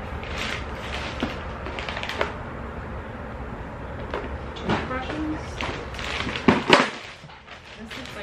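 Thin black plastic garbage bag rustling and crinkling as gloved hands dig through its contents, in irregular handling noises with a couple of louder, sharper bursts near the end.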